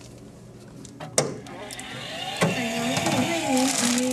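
A sharp door-latch click about a second in, then a hotel delivery robot's synthesized voice speaking a service greeting as its compartment is opened.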